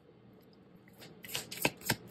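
A deck of tarot cards being handled and shuffled in the hands: a few short, sharp card flicks starting about a second in.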